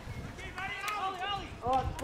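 Distant voices calling out over an open sports field, fainter than close-up shouting, with outdoor background noise.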